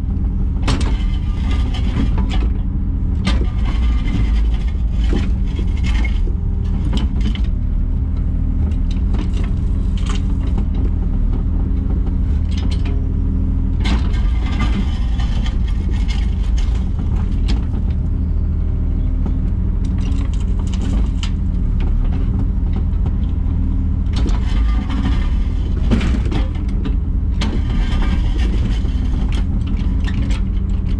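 JCB 3-tonne mini excavator's diesel engine running steadily under load, heard from inside the cab. Its hydraulics work the boom and bucket, with scraping and clatter every few seconds as the bucket digs into the soil.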